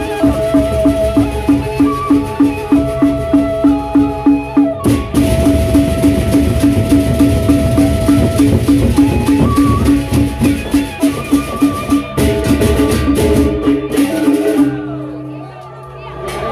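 Sasak gendang beleq ensemble playing: large barrel drums under a pitched metal beat repeating about three times a second, with gong tones and a dense jangle of percussion. The music breaks off near the end.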